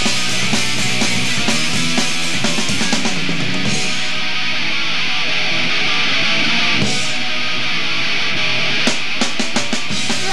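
Live rock band of electric guitars, bass and drums playing loudly with no vocals, ending in a quick run of sharp drum hits near the end.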